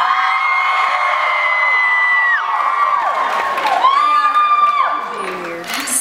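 Concert audience screaming and cheering, with long high-pitched screams from fans close to the microphone: a first wave of held screams fades about two and a half seconds in, and a second rises a little over a second later, then dies away near the end.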